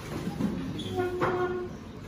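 Wooden chairs moving on a tiled floor as people stand up. About a second in, one chair leg scrapes with a steady squeal that lasts under a second.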